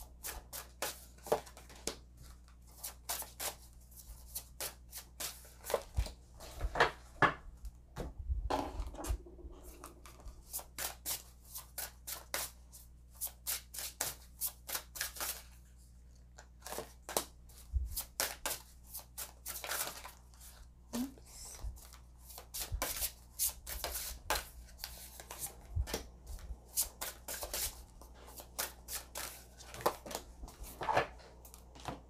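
Tarot and oracle cards being shuffled by hand and dealt onto a wooden table: an irregular run of crisp card snaps and taps, coming in bursts with short pauses between.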